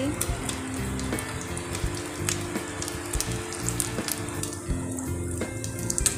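An egg-dipped sandwich frying in shallow oil in a non-stick pan: steady sizzling with scattered pops and crackles.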